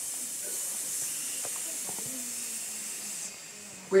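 A long, steady 'sss' hiss, pushed out by tensing the abdomen after a held breath, as a voice exercise. It stops sharply about three seconds in.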